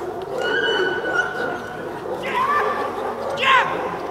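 German Shepherd barking at a protection helper, a hold-and-bark in a bite-work exercise: a couple of sharp, high barks in the second half, the loudest near the end, over a murmur of spectator voices.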